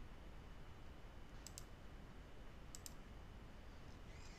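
Two quick double clicks of a computer mouse, about a second and a half apart, over faint room tone.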